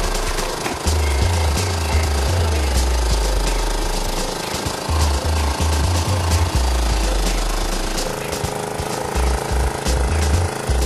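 Background music with a heavy bass line over a steady mechanical clatter of a small engine, typical of the power unit that drives hydraulic rescue tools while they force open a car door. Sharp clicks and knocks of metal being worked are scattered through it.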